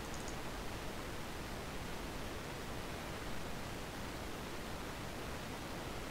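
Steady, even hiss of microphone background noise, with no other distinct sound.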